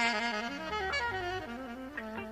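Jazz big band music: a saxophone plays a line of notes stepping downward in pitch, over a bass line.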